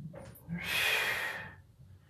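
A lifter's forceful breath out during a barbell bench press rep, lasting about a second, with a short intake of breath just before it.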